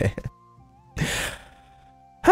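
A breathy sigh from the narrator, a short exhale about a second in, over soft background music with steady held notes.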